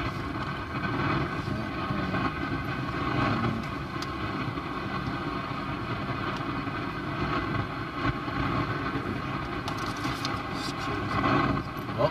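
A car running: steady engine and road noise.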